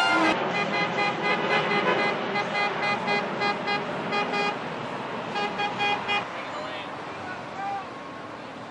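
Vehicle horns honking in rapid short toots, about four a second, over crowd voices and street noise. A second run of toots comes about five and a half seconds in.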